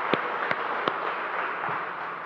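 A small group of people applauding, with individual claps standing out, thinning out toward the end.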